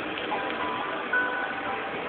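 Faint music, a few held notes changing every half second or so, over a steady background hiss.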